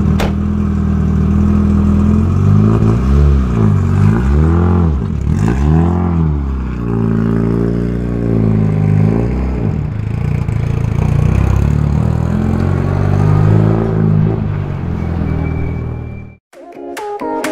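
Rally car engine idling steadily, then revved up and down several times, the pitch rising and falling with each blip as the car pulls away. After that it runs on at moderate, slowly changing revs.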